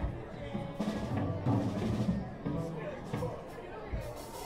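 Live band playing a jam, with drums and bass guitar underneath.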